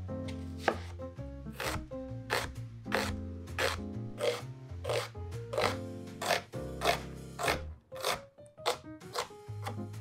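Chef's knife slicing through an onion onto a wooden cutting board: a steady run of crisp cuts, about one and a half a second, each stroke ending on the board. Background music plays under it.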